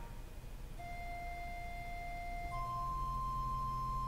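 Organ played softly: a held chord breaks off at the start, then sparse sustained pure-toned notes, one held for about two seconds, followed by a higher note joined by a low bass note about two and a half seconds in.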